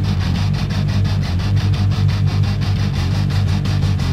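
Nu metal instrumental passage: heavy distorted guitars and bass with dense low tones over a fast, even pulse of about nine beats a second, with no singing.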